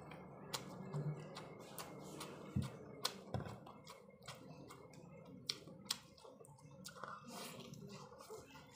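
Close-up chewing of a person eating chicken and rice with his hands, full of irregular wet mouth clicks and lip smacks.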